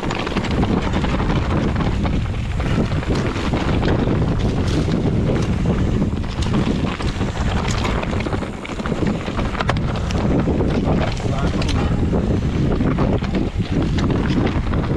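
Mountain bike descending a loose rocky trail: wind buffeting the camera microphone over tyres rolling on stones, with frequent scattered clicks and rattles from the bike and the rocks.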